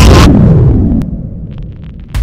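An explosion-like transition sound effect: a loud burst that fades into a low rumble, falling in pitch and dying away over about a second.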